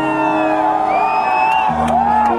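Live rock band playing through a concert PA, recorded from inside the audience, with held chords under crowd voices and whoops.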